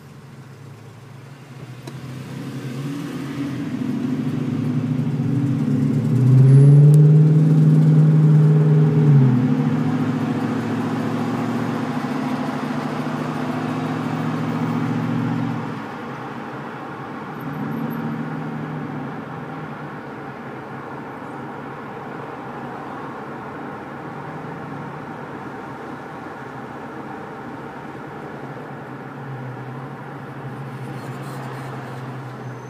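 2005 Dodge Magnum R/T's 5.7 L Hemi V8 through a Flowmaster American Thunder exhaust, heard from inside the cabin while driving. The exhaust note swells over the first few seconds, is loudest around seven to nine seconds in, holds, then falls away sharply about sixteen seconds in to a quieter, steady cruise.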